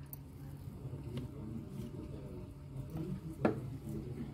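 Thick, sticky besan-and-coconut barfi mixture being scraped out of a metal kadhai into a plastic tray with a wooden spatula: faint soft squishing and scraping, with one sharp knock about three and a half seconds in.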